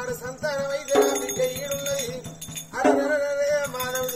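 Oggu katha folk music: a drum keeps a quick, steady beat under jingling metal, while a sustained wavering melody line holds, with two louder entries about a second and three seconds in.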